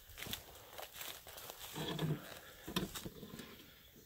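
Footsteps crunching and crackling through dry leaves and twigs on a forest floor, with a brief low voice sound twice, about two and three seconds in.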